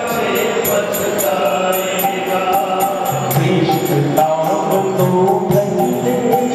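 Devotional kirtan: a male voice singing a chant-like melody over a harmonium's sustained notes and a dholak drum. Small hand cymbals tick a steady beat of about three to four strokes a second.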